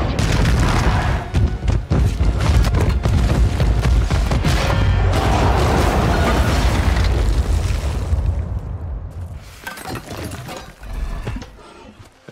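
Film fight sound effects over score music: heavy booming impacts and crashing, smashing hits come thick and fast, then die down over the last few seconds.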